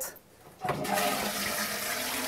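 A toilet flushing with rainwater collected on the roof and stored in a tank: a steady rush of water starts suddenly about half a second in.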